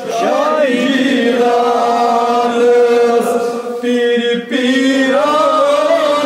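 Male voices chanting a Kashmiri devotional naat together, drawing out long held notes. There is a brief break for breath about four and a half seconds in.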